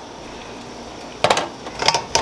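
Glass pot lid with a steel rim lifted off a stainless steamer pot, with two quick clusters of metal clinks: one about a second and a quarter in and another near the end.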